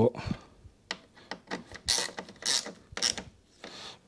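A screwdriver turning the mounting screws of an aftermarket car door striker, making a string of short, irregular clicks and scrapes. The striker is being adjusted because the door would not close once it was tightened down.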